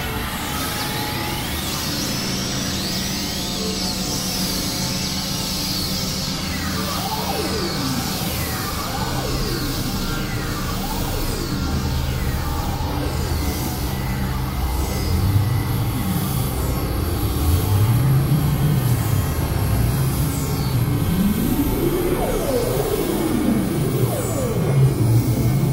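Experimental synthesizer drone music, from a Novation Supernova II and a microKorg XL: sustained low drones with high tones sweeping up and down in arcs. In the second half, low tones bend up and down in slow arcs and the sound grows a little louder.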